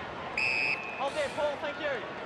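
Stadium crowd noise at a football match, with a short, high, slightly warbling whistle blast a little under half a second in, and a voice calling out faintly in the second half.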